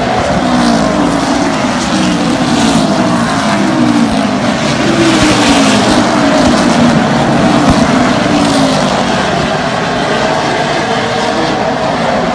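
Super late model stock car V8 engines running as the field passes in a line, one engine note after another falling in pitch as each car goes by.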